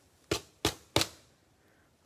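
Three sharp plastic clacks about a third of a second apart, the last the loudest, as rigid top loaders (card holders) are handled and knocked against the table.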